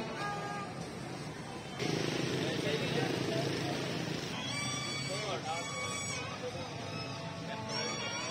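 Busy street ambience: a crowd's voices and chatter over a steady background of traffic noise. About two seconds in, the sound jumps suddenly to a louder, noisier stretch.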